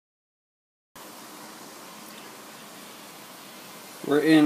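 Silence for about a second, then a steady, even hiss of background noise with no distinct event in it.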